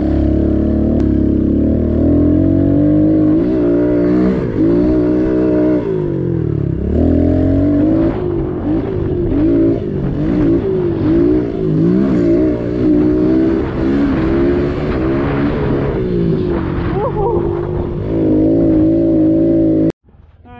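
Small four-stroke pit bike engine ridden hard around a dirt track, its pitch rising and falling over and over as the throttle is opened and shut.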